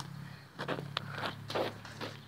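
A few light footsteps and shoe scuffs on a hard outdoor court surface as the ball is set down and the kicker steps back from it.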